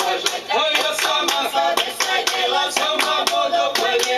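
A small mixed group of men and women singing a song together in a studio, clapping their hands in a steady rhythm of about three claps a second.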